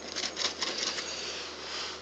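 Scratch-off lottery ticket's coating being scratched away in rapid strokes, fading toward the end.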